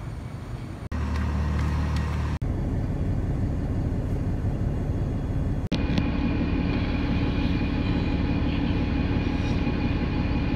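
METRO Blue Line light rail train moving through an enclosed underground station: a steady running hum with a held tone, echoing off the concrete. The sound breaks off abruptly about one second, two and a half seconds and nearly six seconds in.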